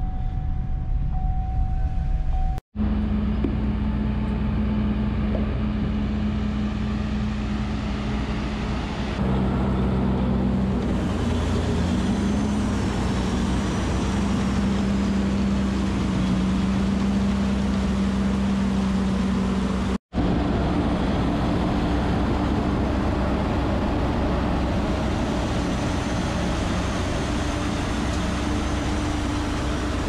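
Steady running of farm machinery in three parts, each broken off abruptly. First a vehicle engine heard from inside a cab. Then a silage bagger and its tractor humming steadily as chopped sorghum is unloaded into the hopper, and finally a steady machine hum at a slightly different pitch.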